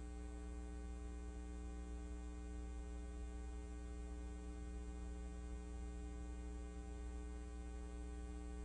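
A steady electrical mains hum with many overtones, unchanging throughout.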